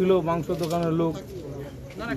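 A man speaking Bengali, his voice held on drawn-out vowels in the first second or so, then a quieter pause.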